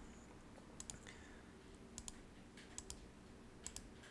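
Computer mouse button clicking: four quick double clicks about a second apart over a faint low hum.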